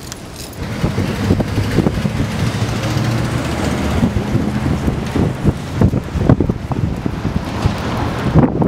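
Street traffic noise: a vehicle engine rumbling nearby, with wind buffeting the microphone. It grows louder about a second in.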